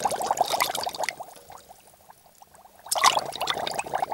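A hand mixing and squeezing food in a steel pot of watery reddish liquid: wet splashing and squishing in two bouts, the first second and again from about three seconds in.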